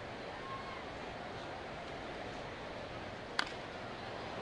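Steady low murmur of a ballpark crowd, then a single sharp crack of a bat hitting a pitched baseball about three and a half seconds in.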